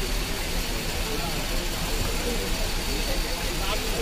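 Busy street-market ambience: a steady rumble of traffic and engines under a background of many people's voices.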